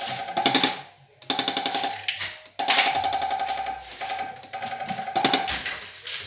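Delphi common-rail diesel injector from a Hyundai Terracan 2.9 CRDi spraying on a hand-lever test stand, in four bursts of rapid buzzing chatter, each about a second long, with a steady whining tone running through them.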